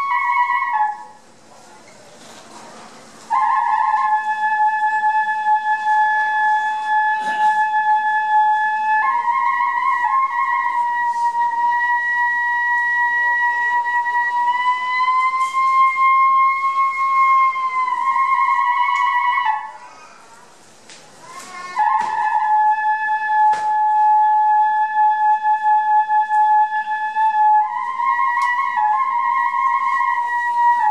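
Kagura flute (fue), a transverse bamboo flute, playing a slow melody of long held notes that step up and down in pitch, with two short breaks, about a second in and about twenty seconds in.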